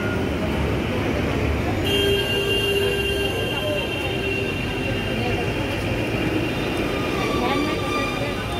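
Busy street-market ambience: a steady rumble of traffic and scattered voices, with a long, steady, high-pitched squeal that starts about two seconds in and holds to the end.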